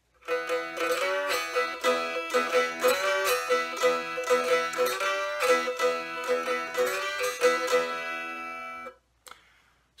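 Cigar box guitar played with a glass bottleneck slide cut from a thick-walled Shock Top beer bottle: a run of plucked notes that slide up and down in pitch, not quite as bright as a thin-walled slide. The playing stops suddenly about nine seconds in.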